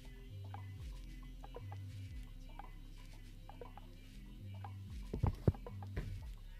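Faint light clicks and taps of small things being handled on a tabletop over a low steady hum, with a couple of sharper knocks about five seconds in.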